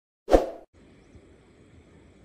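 A single short pop-and-whoosh sound effect from a subscribe-button animation, sudden and loud, fading within half a second. Under a second in it gives way to faint, steady outdoor background noise.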